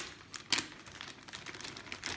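Clear plastic protective bag crinkling in irregular crackles as hands pull it open around a benchtop multimeter, loudest about half a second in.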